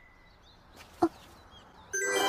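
Faint, high bird-like chirps over a quiet background, broken about halfway by one short vocal 'ah'.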